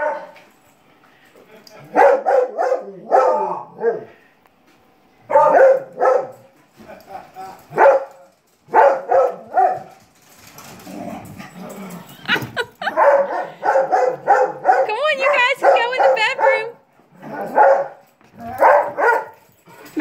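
A dog barking in play, in repeated runs of several barks about a second or two long with short pauses between. The longest run comes in the second half, where the calls waver in pitch.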